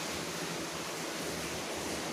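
Steady background hiss with a faint, even low hum.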